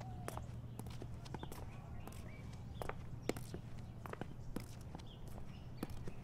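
Slow, irregular footsteps of padded slippers on a concrete floor, soft scuffs and taps a second or so apart, over a steady low hum.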